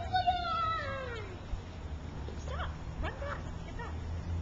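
A child's long, high-pitched yell that falls away in pitch at the end, followed a couple of seconds later by a few short squeals.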